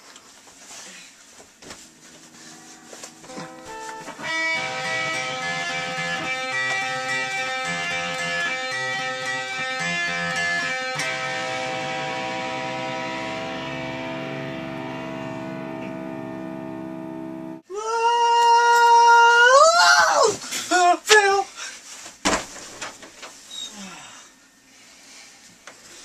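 Electric guitar playing a riff of strummed chords that ring on, then cut off suddenly. A loud rising, wavering tone follows for a few seconds, then a few sharp knocks.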